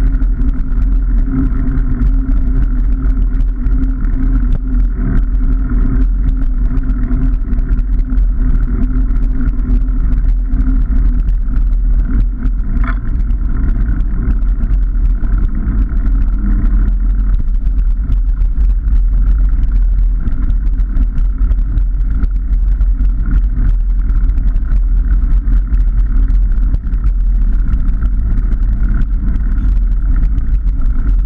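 Wind buffeting the microphone of a handlebar-mounted camera, over the steady hum of a knobby bicycle tyre rolling on a tarmac lane.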